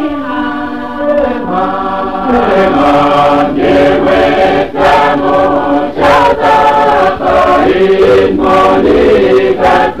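Mixed choir singing a Kosraean-language hymn in four parts, bass, tenor, alto and soprano. The first second or so is thinner, then lower voices join and the full harmony carries on.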